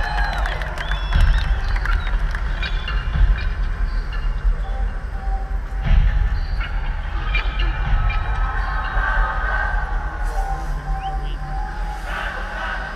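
Live concert music over a large open-air PA, heard from within the crowd: a deep, steady bass drone with long held notes above it. A few crowd whistles sound in the first second or so.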